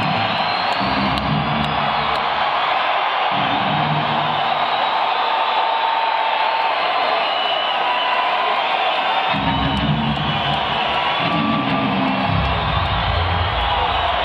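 Heavy metal band playing live in an arena, recorded from the audience: low distorted riff phrases of a few seconds each come and go, with a break of a few seconds in the middle, over a constant wash of amplified sound and crowd cheering.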